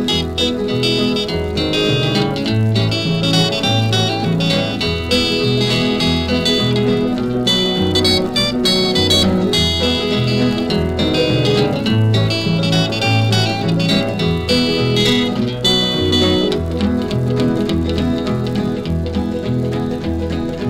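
Instrumental break in a 1950s-style rockabilly song: a picked electric guitar lead over a steady stepping bass line.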